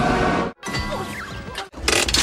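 Back-to-back snippets of animated film soundtracks, each about a second long, holding music with sound effects. Each snippet cuts off abruptly, with a brief silent gap about half a second in and again near the end.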